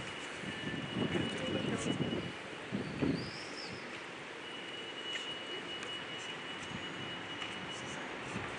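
Open-air courtyard ambience: a low murmur of distant voices, loudest in the first three seconds, with a single short bird chirp about three seconds in.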